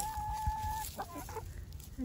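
A chicken giving one long, steady, level-pitched call of about a second, followed by a few short higher calls.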